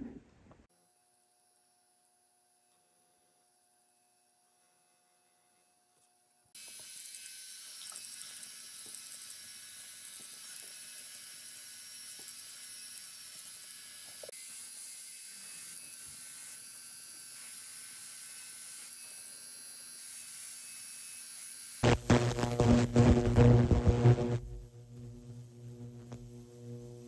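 After a few seconds of near silence, a rotary tool with a rubber abrasive wheel runs with a steady quiet hiss as it sands and polishes a silver pendant. Near the end, a loud steady electrical hum starts for a couple of seconds, from an ultrasonic cleaner.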